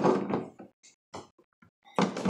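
Plastic crank of a Pie Face toy being turned by hand, its mechanism giving a few short, irregular clicks.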